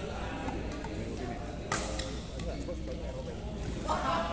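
Badminton racket hitting a shuttlecock: one sharp crack a little under two seconds in, then a couple of fainter hits, over a murmur of voices.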